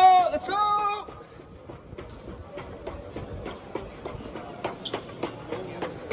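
Quick footfalls on a hard floor, about three a second, from the ARTEMIS bipedal humanoid robot's shod feet striking as it walks. The steps of the people walking beside it are mixed in. A man's voice shouts over the first second.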